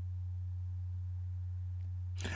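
A steady low hum, one unchanging tone with nothing else over it.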